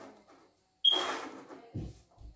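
Wooden carrom men on a powdered carrom board: a sharp clack about a second in as pieces knock together, then a short scrape as they slide across the board while being gathered into the centre circle, followed by two dull knocks near the end.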